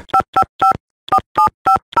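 Touch-tone telephone keypad dialing a number: seven short beeps, each two tones sounded together, three quick ones, a brief pause, then four more.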